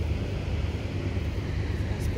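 Wind buffeting the microphone, a steady, unevenly pulsing low rumble.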